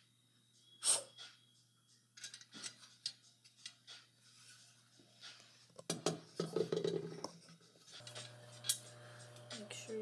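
Metal clicks and clatters of a pressure canner lid being handled and turned over. There is a sharp click about a second in, scattered light knocks, and a louder cluster of knocks around six seconds.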